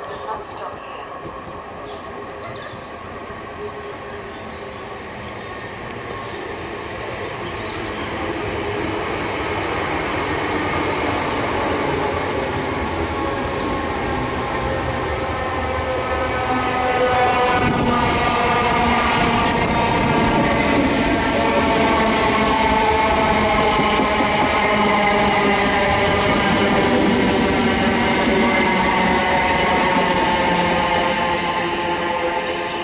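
Electric multiple-unit trains at close range. A running rumble grows steadily louder over the first half. From about halfway a whine of several stacked tones comes in and rises slowly in pitch while the rumble stays loud.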